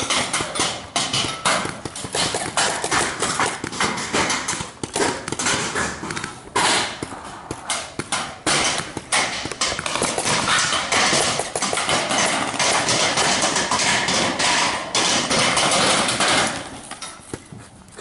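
Paintball markers firing, a fast irregular run of sharp pops and knocks over a rustling hiss that stops near the end.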